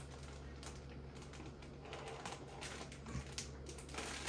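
Plastic zip-top bag crinkling and rustling in irregular crackly clicks as it is handled, over a steady low hum.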